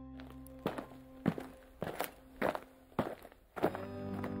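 Footsteps at an even walking pace, six steps about 0.6 s apart, over fading ambient music tones.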